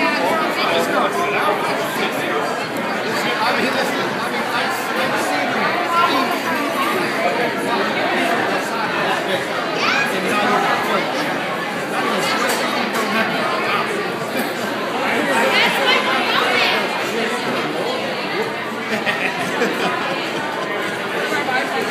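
Many voices chattering at once in a busy restaurant dining room, a steady babble of conversation with no single voice standing out.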